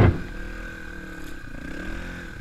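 Yamaha trail bike engine heard from the rider's helmet camera, its revs rising and falling as it is ridden along a dirt track.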